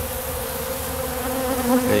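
Many honeybees buzzing in flight around a pollen feeder, a steady, continuous hum.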